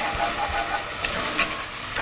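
Chopped onion, celery and garlic sizzling in bacon fat in a pot while being stirred with a wooden spoon: a steady frying hiss as the vegetables sauté.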